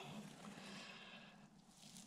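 Near silence, with a faint rustle of hands lifting moist worm bedding and castings that fades away in the first second.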